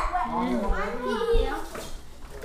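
Indistinct voices of people and children talking in the room, fading quieter near the end.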